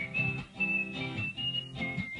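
A person whistling a melody over guitar accompaniment: a clear whistle slides up into a note at the start, holds a few short notes that step up, then drops to a lower note near the end, while the guitar is plucked and strummed underneath.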